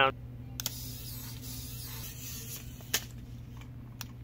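A steady low hum with a few sharp, short clicks spread through it, the loudest a single knock about three seconds in.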